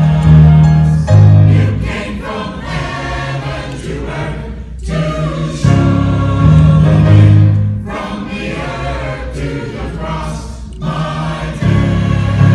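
Mixed church choir of men's and women's voices singing, with short breaks between phrases about five seconds and eleven seconds in.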